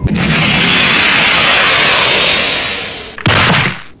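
Anime sound effect of a character flying off: a long rushing whoosh that fades away over about three seconds, then a second short burst of rushing noise near the end.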